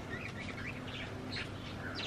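Faint chirps of small birds, a few short calls scattered through, over low background noise.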